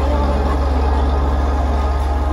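A loud, steady low rumble, with faint pitched sounds above it.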